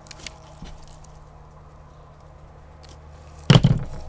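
A few faint snips of small scissors cutting a trailing vine's stems, then a single louder thud about three and a half seconds in as the scissors are set down on the table.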